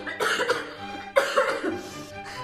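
A young woman coughing hard twice, about a second apart: the cough of someone who has fallen ill.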